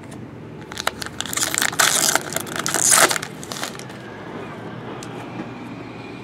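Foil trading-card pack wrapper being torn open and crinkled, a dense crackling for about three seconds that starts about a second in.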